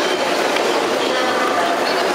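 Busy market hall ambience: a steady wash of noise with indistinct background voices.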